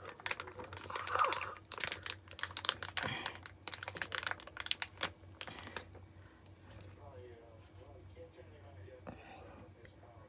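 Foil gel-mask pouch crinkling in quick irregular clicks as it is squeezed and handled to get out the last of the gel, busiest over the first six seconds and then only a few faint clicks.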